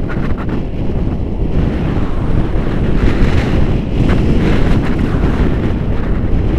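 Loud wind rushing and buffeting over the camera microphone from the airflow of a paraglider in flight, rising a little in strength about halfway through.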